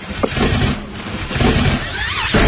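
A rough, noisy motor rumble, played as a sound effect of a power chair being started, with a click near the start.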